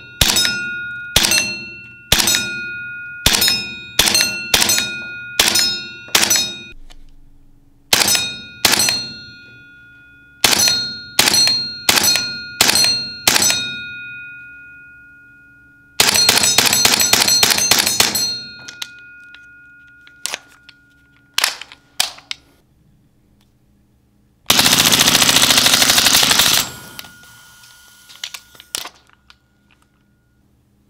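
Lambda Defence GHM9-G gas blowback airsoft SMG firing: quick single shots for the first half, a full-auto burst of about two and a half seconds about halfway, a few more single shots, then a dense continuous blast of about two seconds near the end. Many shots are followed by a long metallic ring from steel plate targets being hit.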